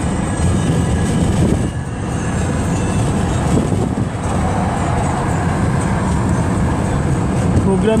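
Steady road and engine noise of a moving vehicle, heard from inside the cabin, with voices mixed in.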